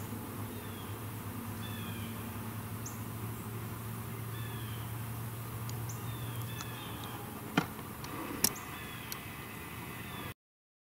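A bird calling with short falling notes, repeated every second or so, over a low steady hum that stops a little past halfway. Two sharp clicks come near the end, louder than the calls.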